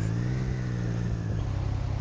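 Triumph Street Triple's three-cylinder engine running under light throttle while riding, its pitch rising slightly and easing back over the first second and a half.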